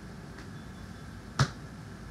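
A single sharp tap about one and a half seconds in, a tarot card being set down on the table, with a much fainter tap before it, over a steady low hum of room noise.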